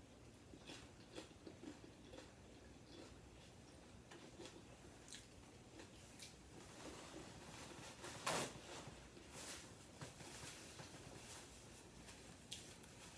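Faint close mouth sounds of a person eating nachos: chewing, lip smacks and finger licking, as scattered small clicks and wet noises, with one louder brief noise about eight seconds in.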